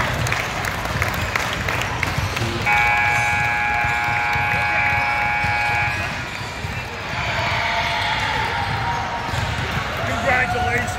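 Gym scoreboard horn giving one steady blare of about three seconds, starting a few seconds in, over the hubbub of a basketball gym. It is the horn that ends the game.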